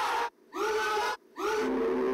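Men screaming a long, held "ahhh" in fright, broken off briefly twice and started again.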